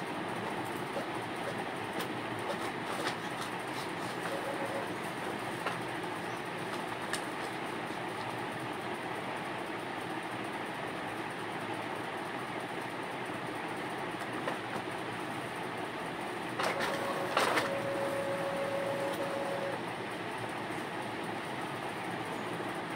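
Steady mechanical rumbling noise with scattered light clicks. About seventeen seconds in comes a brief louder clatter, then a steady tone that holds for about three seconds.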